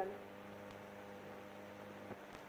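Steady electrical hum with a faint hiss from an old, poor-quality film soundtrack: a low drone made of a few steady tones, left bare as a voice trails off at the start.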